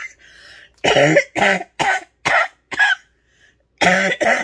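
A woman's coughing fit: a breath in, then a run of about five short coughs roughly half a second apart, a brief pause, and another cough near the end. It is the lingering cough of the reactive airway disease she is recovering from.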